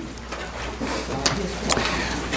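Low steady hum with a few faint clicks, in a pause between spoken words.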